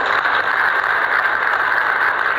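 Audience applauding: a dense, steady patter of many people clapping.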